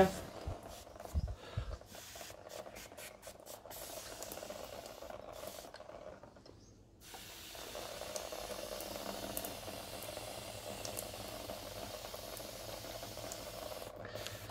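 Hand-pump pressure sprayer sending a fine jet of water onto a bicycle chainring in a steady hiss, rinsing off degreaser. The spray stops for about a second midway, then starts again and runs on steadily.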